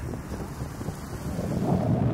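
Wind buffeting the microphone on a moving vehicle, a low rumble with traffic noise under it, louder in the last half second.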